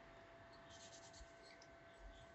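Faint, soft scratchy rustling of fingers parting and picking through oiled hair, with a short run of fine crackles about a second in, over a thin steady tone.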